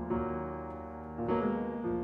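Solo jazz piano: full chords struck and left to ring, with a new, louder chord about a second and a quarter in.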